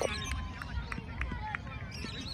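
Scattered shouts and calls from children and adults around an outdoor football pitch, too distant to make out, over a low steady wind rumble on the microphone.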